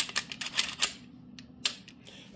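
Sharp clicks and clacks of a compact polymer-framed pistol being handled, its parts knocking as it is picked up and turned. A quick run of clicks, the first the loudest, and one more near the end.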